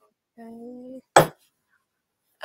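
A single sharp metallic knock, very short, about a second in, as the aluminium cuff blanks on the steel bench block are handled, just after a brief spoken "okay".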